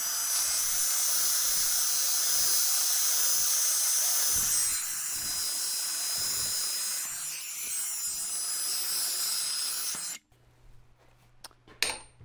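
Pipe-polishing belt attachment on a Milwaukee M18 variable-speed angle grinder, its abrasive belt wrapped around a small steel tube and sanding it: a steady hiss of belt on metal over a high motor whine. The sound eases a little around the middle and stops about ten seconds in.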